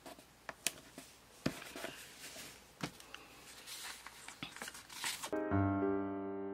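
Hands handling sticker sheets and a planner page, making scattered light taps and soft rustles. Piano background music starts near the end.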